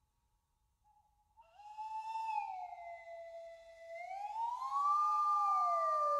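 Two slide whistles sounding together from about a second and a half in, their pitches sliding slowly down, then up, then apart, growing louder towards the end.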